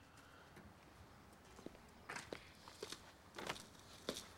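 Near silence, with a few faint footsteps from about halfway in.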